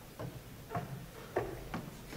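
A few scattered light clicks and knocks, about four in two seconds, over faint room noise.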